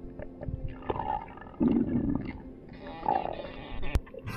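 Muffled underwater sounds during a freediver's ascent: irregular low rumbles and whooshes, the loudest in the middle. A single sharp crack comes near the end as the camera breaks the surface.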